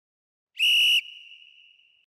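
A single short whistle blast at one steady high pitch, starting about half a second in and lasting about half a second, then cutting off and leaving a faint ring that fades away.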